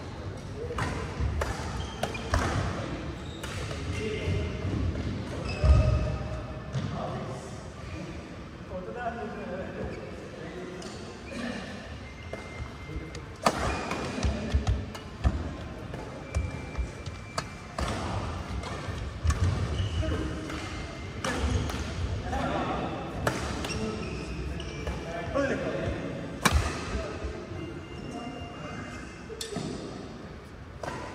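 Badminton play in a large hall: sharp racket strikes on the shuttlecock at irregular intervals, short high squeaks of court shoes, and voices from players in the background.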